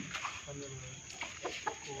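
Several roosters held in hand, clucking now and then in short, sharp calls, with faint voices behind them.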